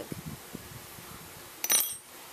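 A metal crochet hook set down on a table: one short clink with a brief high ring near the end, after faint handling of the yarn.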